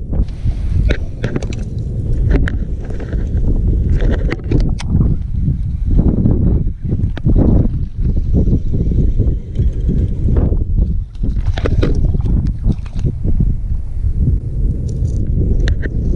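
Wind buffeting the camera microphone, a loud low rumble that rises and falls unevenly, with scattered small clicks and knocks.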